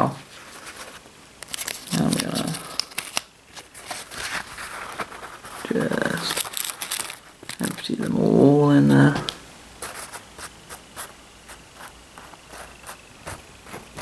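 Paper towel and a small plastic seed packet being handled, with crinkling and rustling and many small clicks as giant sequoia seeds are shaken out onto the towel. Several short voice-like sounds break in, the loudest and longest about eight seconds in.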